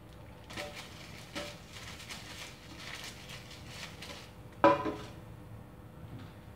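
Soft rustling and light scraping as a plastic-gloved hand rubs cooking oil inside a stainless steel cake pan, then a single clang with brief metallic ringing about four and a half seconds in as the pan is set down on the countertop.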